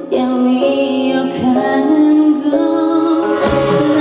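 A woman singing live into a microphone with band accompaniment. Drums and a cymbal come in near the end.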